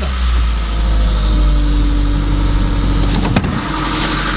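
A van's engine idling with a steady low rumble, and a single sharp knock about three seconds in.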